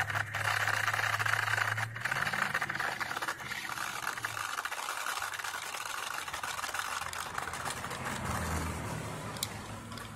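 Electric RC car's motor and gears running as it drives its plow over packed snow and ice: a steady whine with rattling, getting gradually quieter as the car moves away.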